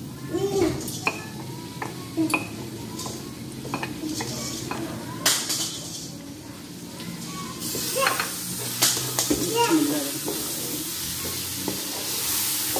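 Chopped tomatoes and masala sizzling in hot oil in an aluminium karahi, while a spatula scrapes and knocks against the bowl and pan rim, with the loudest knock about five seconds in. From about eight seconds in the sizzle grows louder as the mixture is stirred.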